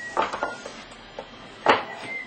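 Ceramic bowls and plates knocking and clinking as they are set down on a wooden table: a few light knocks early on and one sharper clack near the end.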